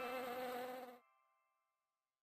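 Cartoon bee buzzing sound effect, fading and cutting off sharply about a second in, with a faint tone trailing briefly after.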